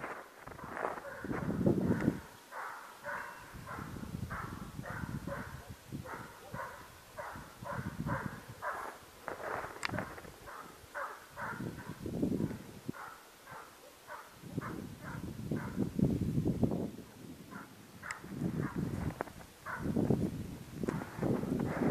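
Estonian hound giving tongue on a hare's trail: a steady run of short barks, about two to three a second, that stops near the end. The continuous voice is the sign that the hound is running the hare it has just put up.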